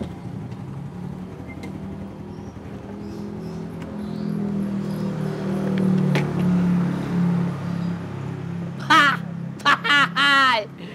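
A motorcycle engine running as the bike rolls up and parks, its steady low hum growing louder and then stopping about eight seconds in. Near the end come two loud, harsh calls.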